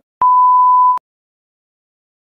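TV colour-bars test tone: a single steady electronic beep at one pitch, just under a second long, starting and cutting off abruptly.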